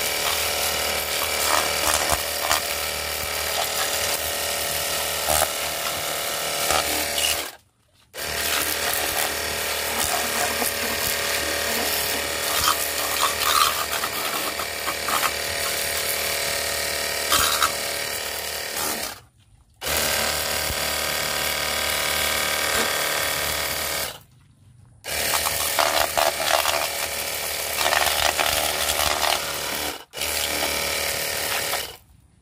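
Cordless battery-powered pressure washer running steadily, its small pump motor whining under the hiss of the water jet as it sprays a scooter. It cuts out briefly three times.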